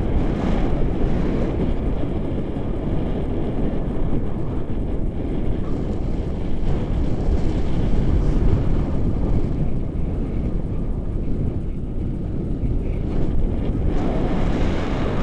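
Wind buffeting the microphone of a camera on a paraglider in flight: a steady, loud low rumble with no let-up.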